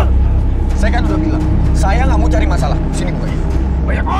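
Raised, shouted voices of a heated argument over a continuous low rumble.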